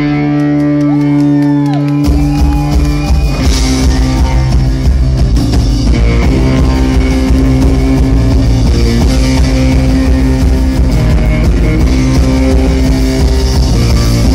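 Live rock band playing loudly on electric guitars and drum kit. For about the first two seconds the guitars hold sustained, bending notes without drums, then the drums and full band come in and play on.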